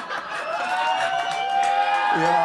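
A voice holding a long high note for about a second and a half, starting about half a second in, like a drawn-out cheer.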